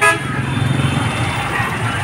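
Busy street traffic: engines of cars and motorbikes running close by as a low steady hum, with a brief vehicle horn toot right at the start.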